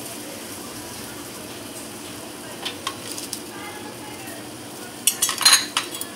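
Cut cluster beans dropped by hand into a steel pot of hot water on a gas stove. A few light clatters come about three seconds in, then a louder burst of splashing and rattling near the end, over a steady low background hiss.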